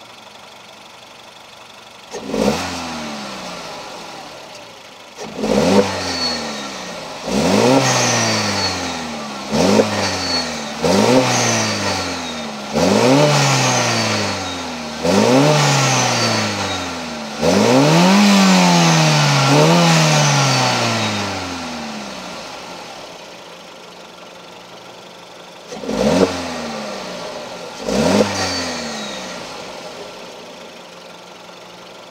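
Peugeot 207's 1.6 THP 150 turbocharged four-cylinder petrol engine, heard from the open engine bay, idling and then revved in about ten short blips, each rising quickly and falling back to idle. One rev near the middle is held longer, then the engine idles for a few seconds before two final blips.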